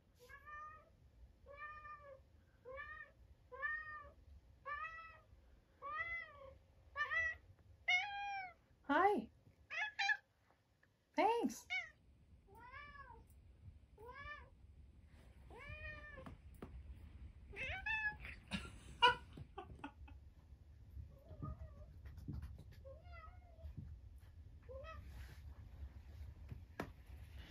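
Cat meowing over and over with a plush toy in its mouth: a string of drawn-out calls that rise and fall in pitch, about one a second, growing louder and higher for the first ten seconds or so, then coming more sparsely.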